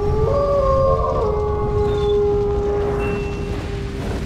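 A wolf howl: one long call that slides up at the start and then holds on one note for about three seconds, fading near the end, over a low rumble.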